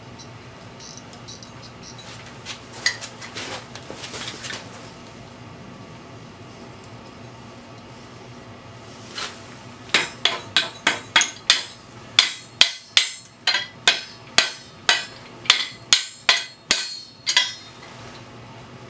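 Metal-on-metal hammer blows at the valve of a steel gas cylinder, struck to loosen the valve. About halfway in, a quick run of sharp ringing strikes begins, roughly three a second for about seven seconds, after a few lighter taps and clinks.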